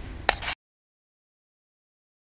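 A short click, then the sound cuts off abruptly about half a second in and the rest is dead silence: the audio track is muted.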